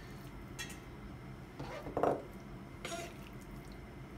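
Hand-chopped raw pork and chicken being scooped off a cutting board into a stainless steel bowl: a few soft, wet handling sounds over a low room hum, the clearest about halfway through.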